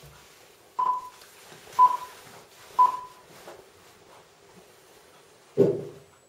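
Three short electronic beep pips at the same pitch, one a second, each with a brief fading tail.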